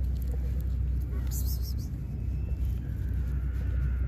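Steady low outdoor rumble with a brief rustle about a second and a half in.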